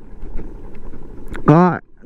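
Low, steady rumble of a motorcycle riding slowly on a dirt track, with wind on the microphone. A voice speaks briefly about one and a half seconds in.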